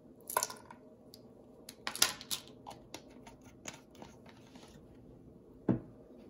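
Scattered light clicks and taps from handling a measuring spoon and a bottle of vanilla extract, with a duller knock near the end.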